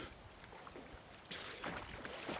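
Faint splashing of a person swimming through still lake water, several strokes, with louder splashes in the second half as the swimmer nears the bank.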